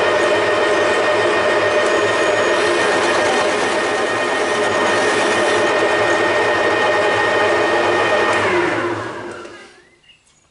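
A metal lathe cutting a taper, with a cordless drill power-feeding the top slide: a steady motor whine over the noise of the cut. About eight and a half seconds in, the whine falls in pitch as the motors wind down, and the sound dies away just before the end.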